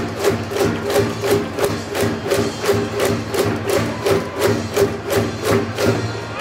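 Cheering-section music from the stands: a steady drum beat about three times a second under a sustained melodic tone, with no break.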